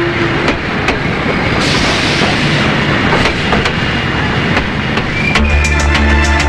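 Train running along the rails, wheels clicking over the rail joints in an irregular clatter, with a rush of hiss building up about one and a half seconds in. Music comes in near the end.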